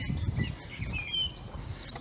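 A few short, high bird chirps about a second in, over a steady low rumble.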